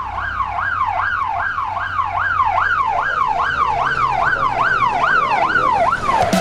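British police car siren on a fast yelp, its pitch sweeping up and down about two and a half times a second, over a low rumble.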